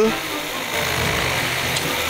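Cartoon chainsaw engine running with a steady, rough noise.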